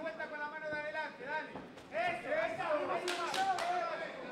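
Men's voices calling out, with no clear words.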